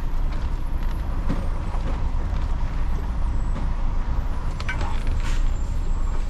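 Lorry engine and drivetrain heard from inside the cab, a steady low rumble while driving slowly, with a few light clicks and rattles, most of them about five seconds in.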